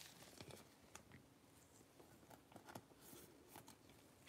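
Near silence, with a few faint soft ticks and rustles of a trading card and a clear plastic sleeve being handled in gloved hands.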